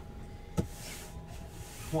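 A sealed cardboard case being handled and set down on a rubber mat: a single knock about half a second in, then about a second of rustling, sliding noise.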